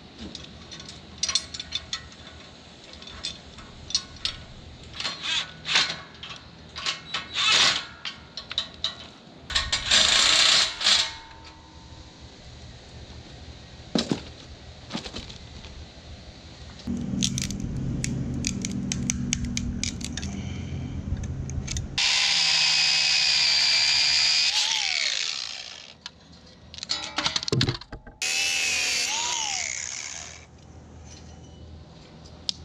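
Metal trailer hardware clanking and knocking as it is handled, then an angle grinder with a cut-off wheel cutting through bolts in two loud bursts in the second half, its pitch falling as the wheel spins down after each cut. It is used to cut off bolts whose nuts spin and will not come undone.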